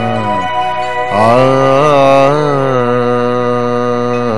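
A man singing a Telugu praise song (stotram) into a microphone, drawing out ornamented, wavering notes without clear words, with a louder held note swelling about a second in.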